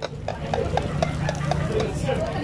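A metal spoon stirring and scraping in a large aluminium wok of tuslob buwa sauce, making a quick run of light clicks about six times a second.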